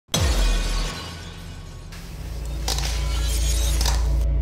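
Horror trailer sound design: a sudden crash-like hit with a deep boom opens, fades over the first second, and gives way to a low, pulsing drone that swells toward the end.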